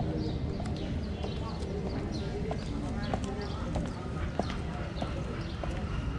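Ginger cat crunching dry kibble at close range: irregular sharp crunches. Background street rumble and voices.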